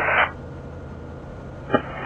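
Steady low drone of the EuroFox's Rotax 912iS flat-four engine and propeller, muffled as heard through the headset intercom feed. A radio transmission cuts off just after the start, and a short click near the end marks the next transmission keying in.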